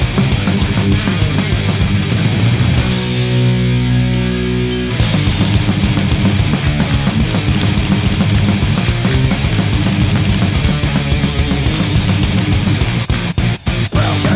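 Death thrash metal song with distorted electric guitars and drums. A chord rings out for about two seconds a few seconds in, and the band cuts out in two short stops near the end.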